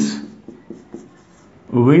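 Dry-erase marker writing on a whiteboard: a few faint short strokes in the gap between a man's spoken words, which are the loudest sound.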